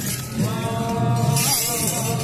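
Hachinohe enburi festival music: held melody tones over a low rhythmic beat, with bright metallic jangling from the dancers' jangiri staffs as they strike and shake them in unison.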